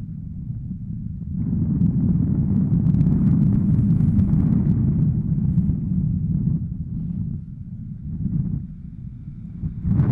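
Wind rushing over the camera microphone during a tandem paragliding flight, a low buffeting rumble. It swells about a second and a half in, eases after about six seconds, and gusts again near the end.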